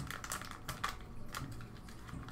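Faint crinkling and small irregular clicks of a crimped trading card pack wrapper being peeled apart and handled.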